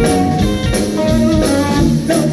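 Live soul-funk band playing, with electric guitar to the fore over bass and drum kit, a steady beat throughout.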